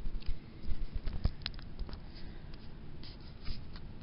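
Handling noise of a handheld phone camera being moved around: rustling and rubbing with scattered small clicks and bumps, the loudest about a second in.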